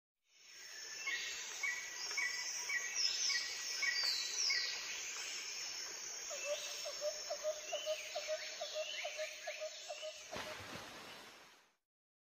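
Birds chirping and whistling over a steady outdoor hiss, with a faster run of lower repeated chirps, about four a second, in the second half; the sound fades in at the start and fades out near the end.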